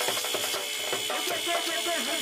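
Live Punjabi folk percussion: the fast wooden clacking of a sapp clapper and the metal jingles of a chimta, dense and rapid, over a pitched folk melody. A thin high tone is held throughout.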